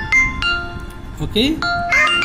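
A fast tune of short, bell-like electronic notes at changing pitches, with a voice saying "okay" about a second in.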